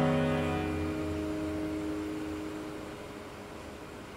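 An acoustic guitar's last strummed chord rings out and dies away over about three seconds, ending the song and leaving only a faint hiss.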